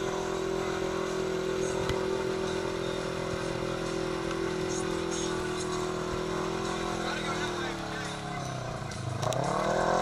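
Polaris RZR XP 1000's parallel-twin engine held at steady high revs as the side-by-side pushes through deep mud. The revs sag about eight seconds in, then climb sharply and louder near the end.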